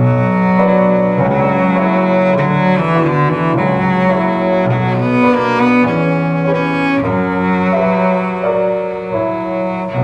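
A cello played with the bow: a slow melody of held notes that change about once a second, starting abruptly at the very beginning.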